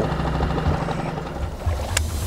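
Small inflatable boat moving on the water under an electric trolling motor, with a steady wash of water and low wind rumble on the microphone. There is a sharp click at the very end.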